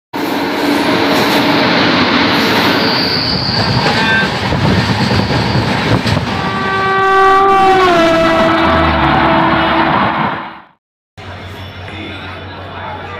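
Loud running noise of a train, with a locomotive air horn sounding from about six seconds in for roughly four seconds, its pitch dropping partway through. The sound cuts off suddenly near the end, then a quieter background takes over.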